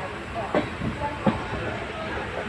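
Passenger train coach rolling slowly, heard from inside: a steady rumble with two sharp clacks of the wheels over rail joints, about half a second and a second and a quarter in.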